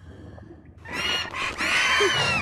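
A dragon's high-pitched screeching cry, starting just under a second in, its pitch arching up and then down over about a second, over a low rumble.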